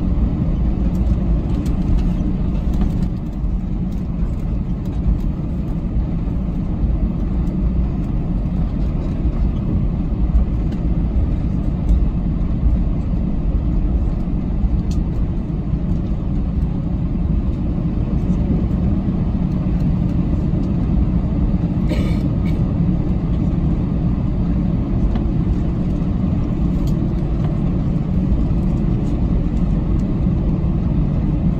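Steady low rumble inside the cabin of an Airbus A321 taxiing on the ground, its jet engines at taxi idle. A brief high-pitched sound about two-thirds of the way through.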